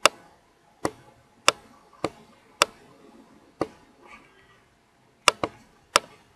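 Computer mouse clicking: about nine short, sharp clicks at irregular intervals, two of them in quick succession near the end.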